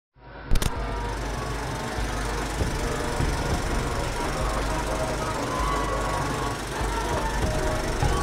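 Opening title soundtrack: a sharp click about half a second in, then a dense, steady rattling noise over a heavy low rumble, with faint tones running through it.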